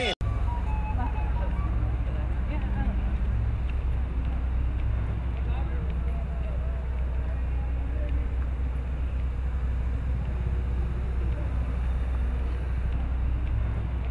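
Outdoor background sound: a steady low rumble with faint voices of people talking in the distance.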